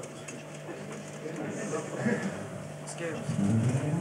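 Six-string electric bass played with the fingers: a run of quick low notes, louder over the last second.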